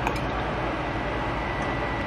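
Kitchen fan running: a steady whoosh with a faint high steady whine.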